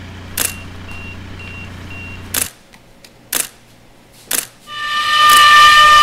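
Camera shutter clicking four times, about a second apart, with three faint short beeps after the first click, over a steady low hum that cuts off suddenly midway. Near the end, music with held, drone-like tones fades in and becomes the loudest sound.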